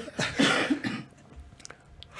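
A person's short cough with breathy noise through the first second, then near quiet with a faint click.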